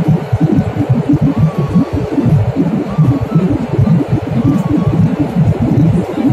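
Jet airliner cabin noise in cruise flight: a loud, uneven low rumble.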